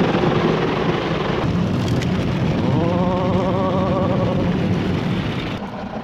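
Automatic car-wash water jets drumming and hissing on the car's roof and windows, heard from inside the cabin over a steady low hum, until the spray cuts off suddenly near the end. A brief wavering hum sounds in the middle.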